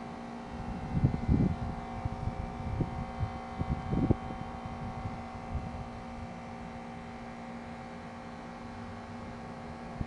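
Gusts of wind buffeting the microphone in low, uneven rumbles from about a second in until about six seconds in, over a steady electrical hum that runs throughout.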